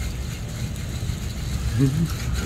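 Fishing reel cranked steadily by hand, its gears running as braided line winds onto the spool against the drag of two tennis balls squeezed on the line. A brief voice is heard near the end.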